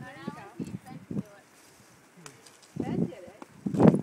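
Indistinct voices of people nearby talking, in short bursts with a quieter gap in the middle; the loudest burst comes near the end.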